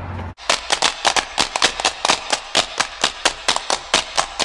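Rapid, rhythmic hard-shoe taps of Irish-style step dancing, about six or seven sharp taps a second, starting abruptly after a brief low hum.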